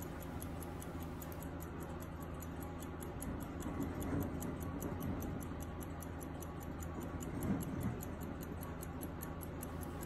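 Ticking of a Pierre Millot French carriage clock movement's horizontal balance-wheel platform escapement, steady and even at about five ticks a second (18,000 beats per hour). A faint handling rustle sounds under it as the movement is turned by hand.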